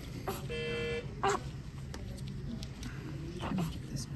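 A newborn's soft grunts and snuffles, with a single steady electronic beep lasting about half a second, about half a second in.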